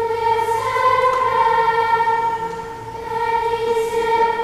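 Children's choir singing a sacred piece in long held notes, the pitch rising briefly about a second in, with a short softer moment near the end.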